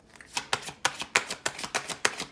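A deck of cards shuffled by hand: a quick, uneven run of sharp clicks, several a second, starting a moment in.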